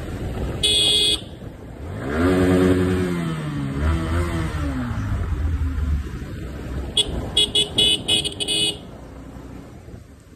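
Yamaha R15 V3 motorcycle riding, its 155 cc single-cylinder engine revving up about two seconds in, then wavering and easing off. A horn honks once about a second in, then gives a quick string of short honks near the end.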